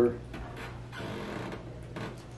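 Paintbrush working paint onto a canvas: faint, soft scratchy brushing over a steady low hum.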